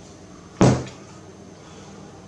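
A single sharp knock about half a second in: a plastic tube of sealant knocked on end against a plywood workbench.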